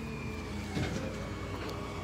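Vehicle engines idling: a steady low rumble with a faint steady whine, and a brief soft sound about a second in.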